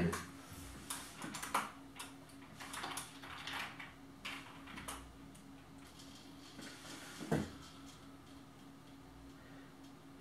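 Faint tapping and clicking of a computer keyboard and mouse, with one sharper knock about seven seconds in, over a steady low hum.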